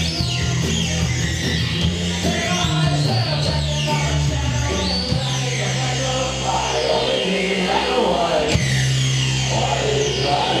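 A live rock band playing loud music with electric guitar over a steady bass line, heard from the audience in a concert hall.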